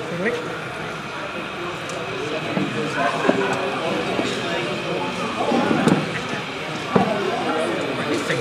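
Indistinct chatter of many voices, with two sharp knocks, one about three seconds in and one near the end.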